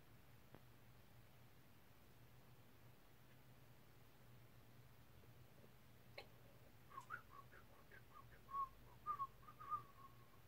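Near silence, then about six seconds in a person starts whistling a string of short notes.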